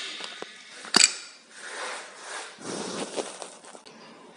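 Rustling and scraping handling noise, with one sharp click about a second in.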